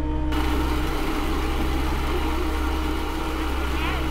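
A steady machine-like running noise starting about a third of a second in, over a low, sustained music drone.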